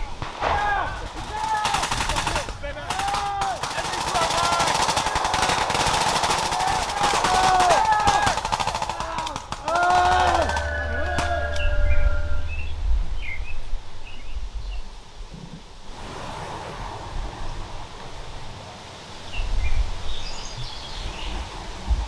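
Rapid rifle and machine-gun fire in bursts, blank rounds in a training ambush, with shouting, for roughly the first ten seconds. The firing then stops, leaving a much quieter outdoor background with a few faint chirps.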